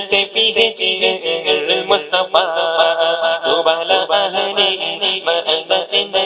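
Male voice singing a naat, an Islamic devotional song, in a sustained, ornamented line, with a long wavering held note about two seconds in, over a steady pulsing backing.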